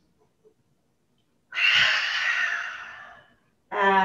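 A woman's forceful lion's-breath exhale through the open mouth: a loud breathy rush about a second and a half in that fades away over nearly two seconds.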